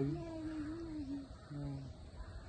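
A person's drawn-out voice, wavering in pitch, breaking off briefly about one and a half seconds in before sounding once more.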